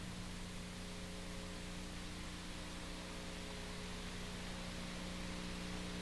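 Steady hiss with a low, even electrical hum: the tape and recording noise floor, with no distinct sounds.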